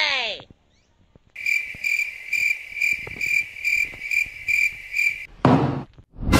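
Cricket-like chirping: a steady high trill pulsing about twice a second for about four seconds. It is preceded by the tail of a falling-pitch sound effect at the start, and there is a short whoosh just before the end.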